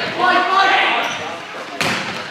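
A volleyball struck hard at the net about two seconds in, a single sharp smack that echoes around a sports hall. Before it, players' voices shout calls during the rally.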